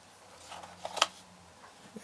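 Plastic battery magazine of a Canon BG-E7 battery grip being handled, with a few light clicks and one sharp click about a second in.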